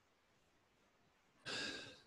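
Near silence, then about a second and a half in a man's short audible breath, a sigh-like intake that fades just before he speaks.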